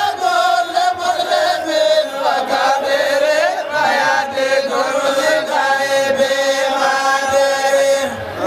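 Voices chanting zikr, Islamic devotional remembrance, in a continuous melodic line of long held notes that slide up and down without a break.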